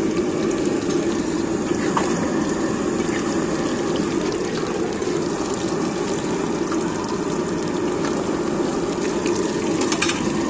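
Small fritters deep-frying in a blackened iron kadai of hot oil, the oil sizzling and bubbling steadily.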